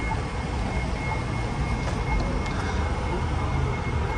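Steady low rumble of passing road traffic, with a faint thin high whine held through most of it.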